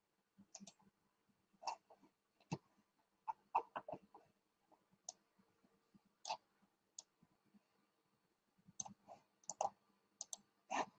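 Faint, irregular clicking and tapping of a computer keyboard and mouse, in scattered clusters with the sharpest clicks a few seconds in and near the end.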